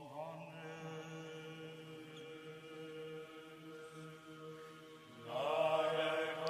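Slow sung chant: a low note held steadily as a drone beneath a slow vocal line, swelling louder about five seconds in as a stronger voice enters.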